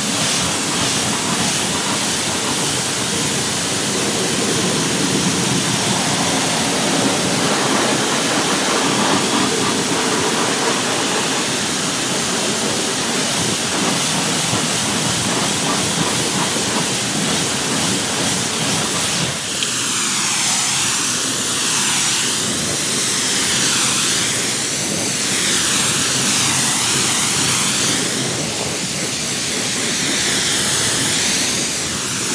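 A Kränzle K7 pressure washer's high-pressure water jet spraying onto car paintwork and wheels, rinsing off traffic film remover with a steady, loud hiss. In the last third the hiss wavers in tone in slow sweeps.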